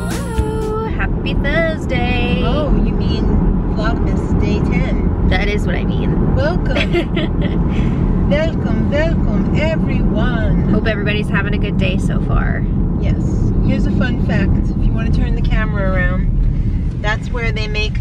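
Women talking inside a moving car, over steady low road and engine noise in the cabin.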